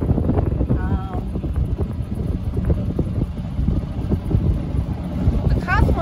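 Wind buffeting the microphone while riding in a moving golf cart: a steady low rumble. Brief snatches of talk come through about a second in and near the end.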